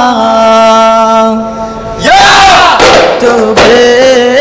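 Daf Muttu singing: one long held sung note, then about two seconds in the group breaks into a loud chant. A few sharp daf frame-drum strikes come in the second half.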